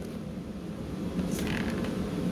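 Steady low room hum, with a brief soft rustle about one and a half seconds in as the paper-and-straw airplane is picked up.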